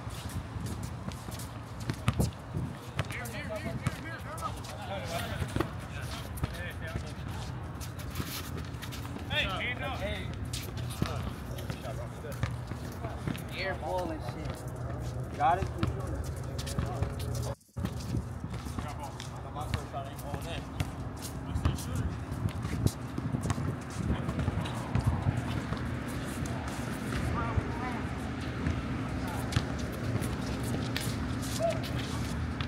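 Ambient sound of a pickup basketball game on an outdoor court: indistinct voices and calls from the players, a basketball bouncing and scattered knocks of play, over a steady low rumble. The sound cuts out for an instant a little past halfway.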